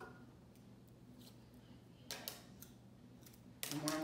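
Faint short crackles and ticks of heat-resistant tape being pulled from its roll and torn off, loudest about two seconds in, over a steady low hum.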